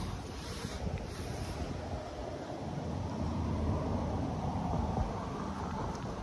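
Wind buffeting the microphone: a steady low rumble that swells slightly in the middle.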